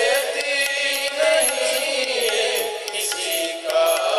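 Male voices singing a Hindi devotional bhajan in a held, chant-like melody over instrumental accompaniment.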